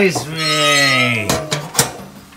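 A person's drawn-out exclamation that falls slowly in pitch, then two sharp knocks about half a second apart.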